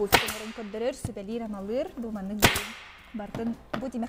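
Upholstery staple gun firing twice, about two and a half seconds apart, as grey fabric is fastened to a pouf frame. Each shot is a sharp crack with a brief trailing hiss.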